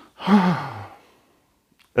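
A man's breathy, voiced sigh, about half a second long, falling in pitch.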